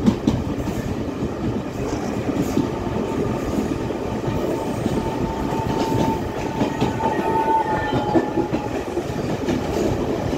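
Passenger train running along the track, heard from an open carriage window: a steady rumble with wheels clacking over the rail joints. A faint steady high tone joins in for a few seconds past the middle.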